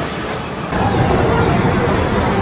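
Loud arcade din from the shooting-game cabinets: a dense low rumble of game sound that jumps up suddenly about two-thirds of a second in.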